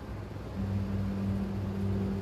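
A steady low hum: one low held tone with a deeper hum beneath it, coming in about half a second in and holding unchanged.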